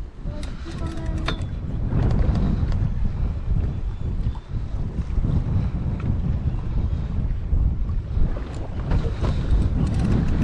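Wind buffeting the microphone on an open boat deck at sea, a steady low rumble, with a few faint clicks in the first second and a half and again near the end.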